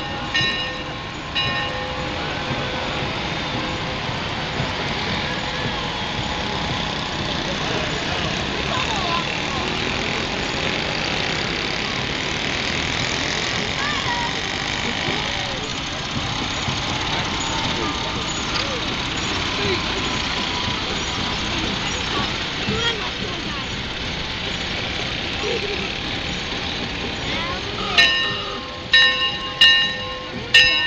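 A horn sounding a few short toots near the start and again, louder, near the end. In between, a steady din of passing parade vehicles and crowd chatter.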